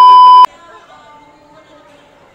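Test-tone beep of a TV colour-bars transition effect: one loud, steady, high beep that cuts off suddenly about half a second in.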